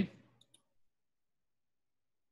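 The tail of a spoken word fading out, two faint clicks about half a second in, then dead silence with no room sound at all.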